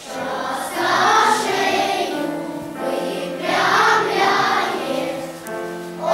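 Choir of young children singing together with piano accompaniment, in phrases that swell and fade.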